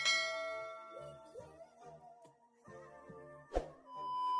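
A bright chime-like ding sound effect rings out at the start and fades over a second or so, over light intro music, with a sharp click near the end.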